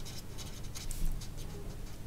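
Marker pen writing on paper: a quick run of short, light strokes as a word is handwritten.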